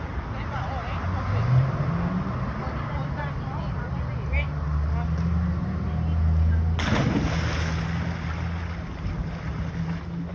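Pool water sloshing over a steady low hum, with faint voices in the background. About seven seconds in comes a sudden splash as someone jumps into the pool.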